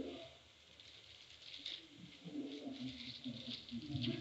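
Whiteboard eraser wiping across the board, a faint run of short rubbing strokes starting about a second and a half in.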